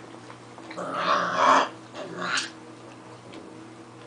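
Six-week-old puppies vocalising in play as they tug at a rope toy: a short, loud outburst about a second in and a briefer one just after two seconds.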